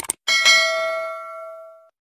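Two quick clicks, then a bell chime sound effect that rings with several steady tones and fades out over about a second and a half: the notification-bell sound of a subscribe-button animation.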